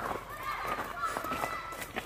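Footsteps of several people walking past over dry fallen leaves and twigs. A thin, high whistle-like tone recurs in the background.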